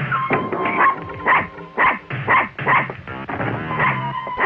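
Small dog yapping, about five quick barks starting about a second in, over dramatic background music.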